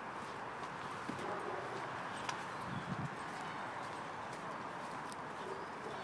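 Footsteps of a person and a dog walking on a leaf-littered woodland path: a steady rustle with a few light ticks.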